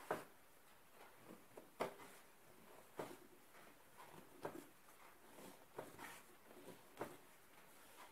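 Hands kneading a stiff dough on a wooden table: faint soft thuds as it is pressed and pushed, roughly every second and a half, with quieter squishing between.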